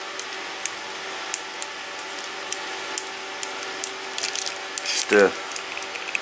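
Light, scattered clicks and taps of a plastic lens-cleaning brush pen being handled, over a steady faint hum.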